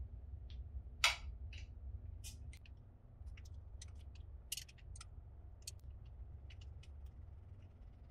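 Small, scattered clicks and taps of a screwdriver and metal parts as a dirt bike's throttle assembly is unscrewed from the handlebar, with one sharper click about a second in, over a low steady hum.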